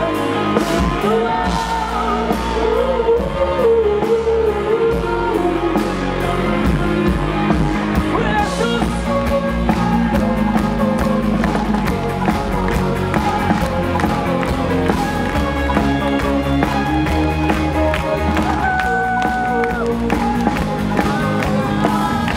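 Rock band playing live, with electric guitars, bass, drums and keyboards, loud and continuous.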